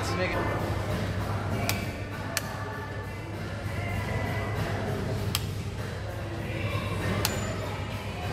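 Four sharp clicks of white rocker wall light switches being flicked by hand, spaced irregularly a second or more apart, over a steady hum with background music and voices.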